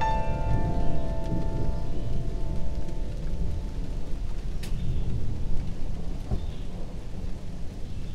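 Rain with a deep, continuous rumble of thunder. A piano chord rings on over the first few seconds and fades away, leaving only the rain and rumble.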